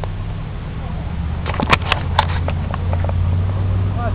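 A company of muskets firing a ragged run of shots some way off: about half a dozen sharp cracks inside a second, about a second and a half in, over a steady low hum.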